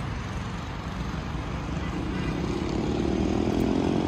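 Road traffic rumble, with a motor vehicle's engine slowly rising in pitch and growing louder over the second half as it accelerates.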